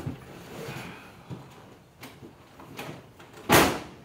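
Rustling and light knocks as someone climbs into the low open cockpit of a Triumph TR3, then one loud, short thud about three and a half seconds in, typical of the car's door being shut.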